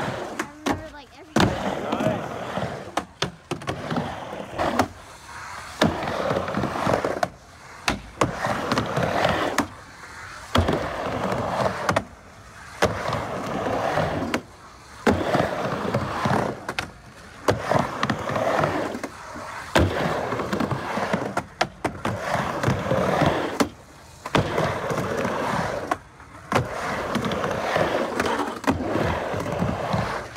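Skateboard wheels rolling back and forth across a wooden half pipe, the roll swelling and fading about every two seconds as the rider goes from wall to wall. Sharp clacks come as the board turns at the lip.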